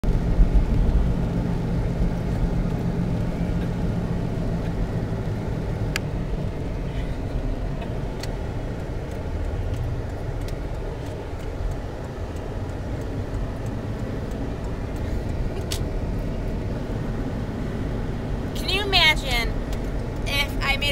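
Jeep's engine and road noise heard inside the cabin while driving, a steady low rumble with the engine hum loudest in the first few seconds. A few light clicks, and a brief voice near the end.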